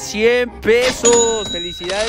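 Excited voices shouting, with a bright bell-like ding about halfway through that rings on steadily to the end.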